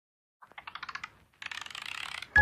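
Two quick runs of sharp clicks: about a dozen that speed up, then after a short pause a denser, faster run.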